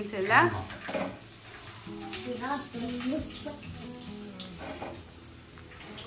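Running water from a kitchen tap with low voices, and a faint sung melody in the quieter middle stretch.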